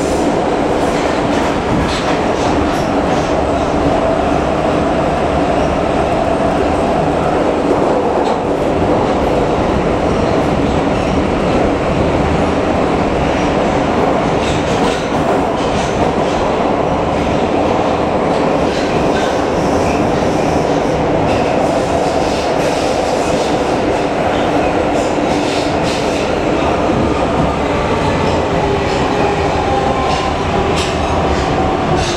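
Metrowagonmash metro train heard from inside the car while running at speed through the tunnel: a steady loud rumble with several humming tones from the drive, and occasional clacks from the wheels on the rails.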